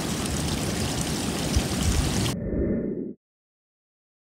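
Pond water sloshing and splashing around a hand net being worked through a shallow garden pond, over wind buffeting the microphone. The sound cuts off abruptly about three seconds in.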